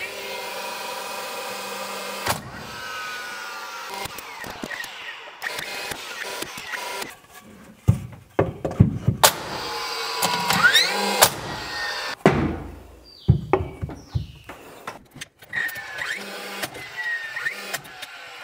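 Cordless framing nailer at work: its motor whirs, then several sharp nail shots go off into framing lumber, mixed with knocks from handling the boards.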